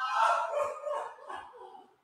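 A man laughing manically in a few loud, breathy bursts, the Joker-style laugh of the music video's soundtrack.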